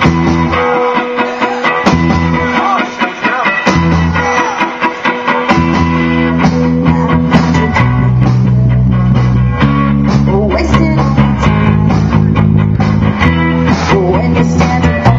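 Live punk rock band playing with electric guitar and drums. The first five seconds are sparse, with low notes that start and stop; then the full band comes in steadily about six seconds in, and the low end gets heavier from about eight seconds in.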